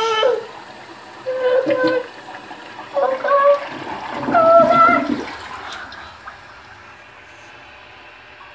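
Toilet flushing with a boy's head down in the bowl, the water rushing steadily. Three short vocal outbursts ride over it in the first five seconds, and then the flush grows quieter.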